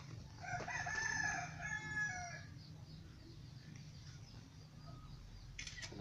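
A rooster crowing once, a single call of about two seconds starting about half a second in.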